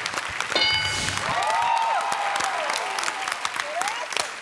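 Studio audience applauding and cheering. About half a second in, a short bright chime of several steady high tones sounds as an answer is revealed on the game-show board, followed by whoops from the crowd.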